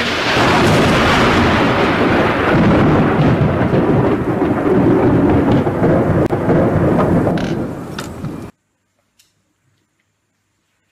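Thunder sound effect: a loud rolling rumble that starts at once, runs about eight seconds and cuts off abruptly into silence.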